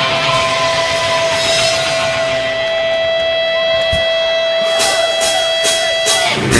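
Live rock band: an electric guitar holds one long steady note. Near the end a cymbal starts striking about twice a second.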